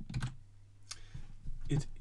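Two sharp computer mouse clicks about a second apart, over a steady low hum.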